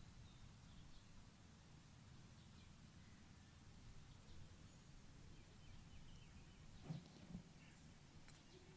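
Near silence: faint low background hum, with two brief faint low sounds near the end.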